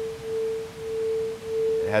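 Small crystal singing bowl rubbed around its edge with a mallet, singing one steady pure tone that swells and dips slightly in loudness about every 0.7 seconds.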